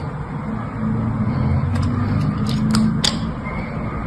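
Snap-off utility knife blade cutting through a block of dry, hardened soap: a rough crunching grind for a couple of seconds, with several sharp snaps as small scored cubes crack free, the loudest just before the end.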